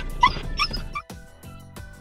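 Siberian husky puppies whining in short, high, rising yips for about the first second, then background music with a steady beat takes over.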